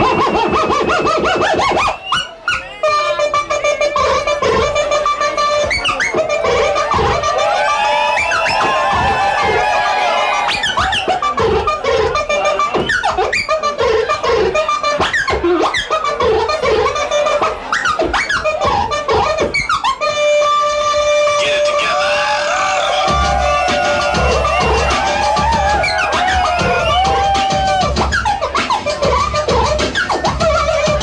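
Live turntable scratching: vinyl records cut and scratched on two turntables through a DJ mixer, a rapid run of pitch-sweeping scratches and chopped held tones. There is a brief break about two seconds in, and a deep bass beat joins about three quarters of the way through.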